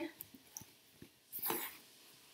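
Quiet handling of a fabric knitting project bag as it is turned open, with faint light ticks and one short breathy rustle about one and a half seconds in.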